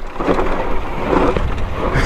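Rushing, buffeting wind on the camera microphone with the noise of an electric dirt bike's knobby tyres scrabbling over loose dirt as it climbs a slippery hill.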